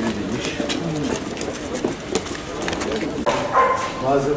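Indistinct voices of a group of men talking among themselves, with no single clear speaker.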